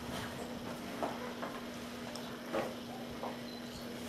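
A puppy gnawing and licking a marrow bone stuffed with cream cheese: faint, irregular wet clicks and crackle, over a steady low hum.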